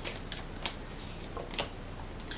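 Tarot cards being handled as a card is drawn from the deck: a few short, sharp flicks of card stock over an otherwise quiet room.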